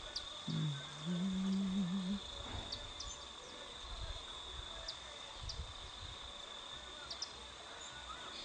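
Steady high-pitched drone of insects, with scattered short high chirps. About half a second in, a low hum of a voice is held for under two seconds.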